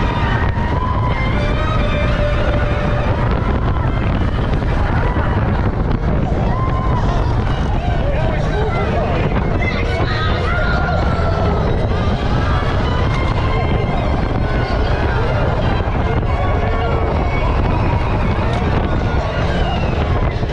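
Incredicoaster steel roller coaster train running along its track: a loud, steady rumble of wheels on rail with wind on the microphone. Riders' voices and shouts rise and fall over it.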